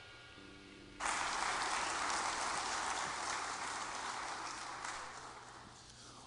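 Congregation applauding, breaking out suddenly about a second in and slowly dying away toward the end.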